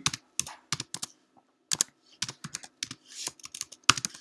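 Typing on a computer keyboard: irregular runs of keystrokes, with a short break just over a second in.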